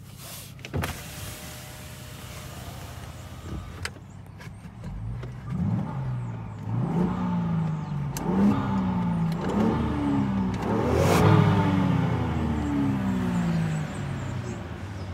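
Land Rover Defender 110's engine revved in Park: about six quick throttle blips in a row, each rising in pitch and falling back, getting louder toward the end. A sharp click about a second in.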